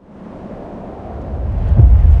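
A deep, windy rumble that fades in from silence and swells steadily louder over two seconds, with a hiss above it: trailer sound design for a snowy wilderness.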